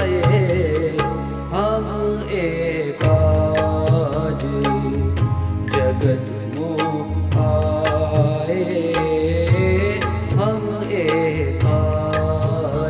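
Punjabi devotional song (bhajan) music: a melody line over a steady percussion beat and deep bass notes.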